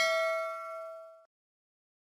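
A chime-like 'ding' sound effect for the YouTube notification bell. It is struck just before and rings on as one clear, bell-like tone that fades away about a second and a quarter in.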